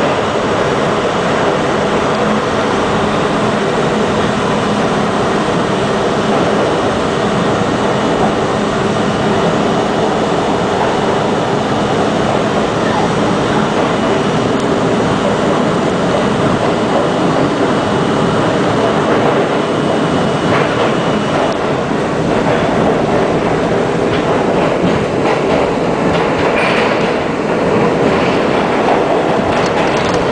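St. Louis Car R42 subway train running at speed through a tunnel: a loud, steady noise of wheels on rail and motors, with a thin high whine that stops about two-thirds of the way through and clicks over the rails near the end.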